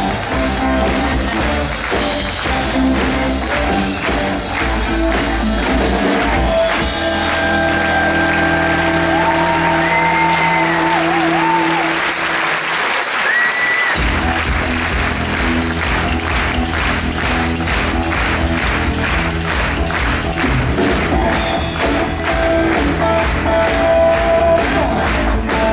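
Rock music from a band with drums, bass and guitar. About a quarter of the way in, the drums and bass drop out, leaving held chords and a bending lead line. A little past halfway the full beat comes back in.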